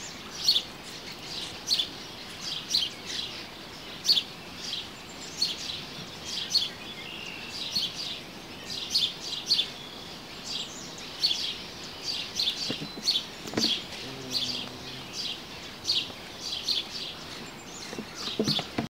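Bird chirping: short, high chirps repeated about once or twice a second, over a faint steady outdoor background.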